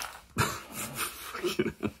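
A man laughing softly and breathily under his breath, starting with a sharp puff of breath and then short chuckles.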